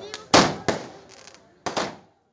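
Aerial fireworks bursting overhead: a string of sharp bangs, with two loud ones in the first second and then a quick pair near the end, each fading away.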